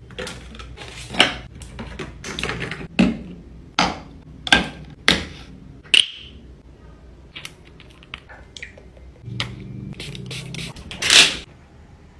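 Plastic skincare bottles and jars handled on a shelf: a run of sharp clicks, taps and knocks as they are picked up and set down. A plastic bottle cap clicks once about six seconds in, and a longer brushing swish comes near the end.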